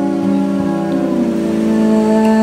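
Instrumental passage of live acoustic music: acoustic guitar with a bowed cello holding long notes that change pitch a few times.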